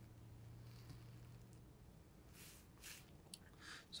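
Near silence: room tone with a faint steady low hum and a few faint, brief rustles in the second half.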